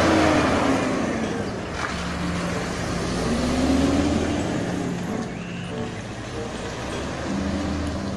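Heavy diesel lorry engine, a DAF CF tractor unit hauling a curtain-side trailer, pulling through a tight hairpin bend with a steady low note and road noise; the engine note rises and falls slightly around the middle.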